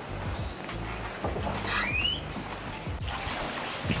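Background music with a steady low bass. About halfway through, a brief high-pitched sound rises quickly in pitch.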